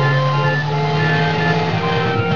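Film score music: a melody of short high notes over sustained low notes.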